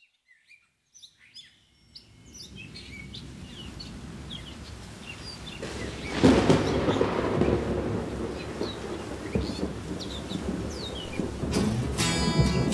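Birds chirping, joined from about two seconds in by a rumbling noise like thunder that swells to its loudest about halfway and rolls on. Acoustic guitar comes in just before the end.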